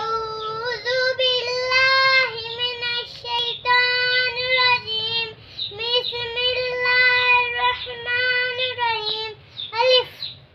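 A young girl reciting Arabic aloud from her lesson book in a sing-song chant, holding long, fairly level notes on the syllables between short breaths.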